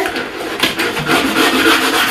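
Stiff brush head on a telescopic handle scrubbing wet ceramic bath tiles in quick back-and-forth strokes.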